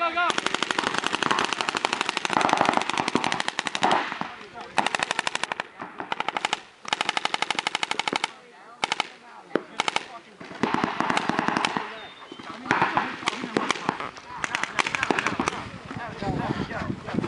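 Paintball markers firing long, rapid strings of shots in several bursts, with short gaps between strings. A shout of "go!" comes right at the start.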